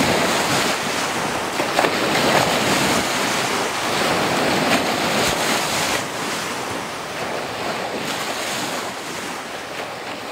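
Wind buffeting the microphone over the wash of river water, an even rushing noise that eases somewhat after about six seconds.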